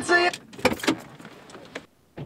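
Music from a car stereo cuts off just after the start, followed by several sharp clicks and knocks of a car door being opened and someone getting out of the seat.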